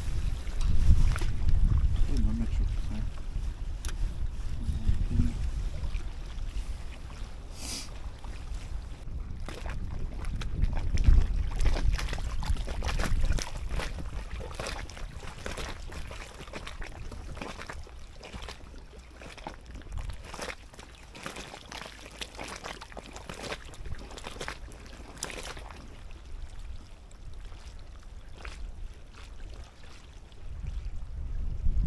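Wind rumbling on the microphone with small waves lapping at the bank, strongest in the first half and easing later on, with a few faint scattered clicks.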